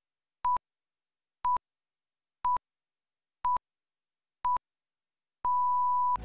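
Electronic beep tone: five short pips exactly a second apart at one steady pitch, then a longer beep at the same pitch near the end, with dead silence between the pips.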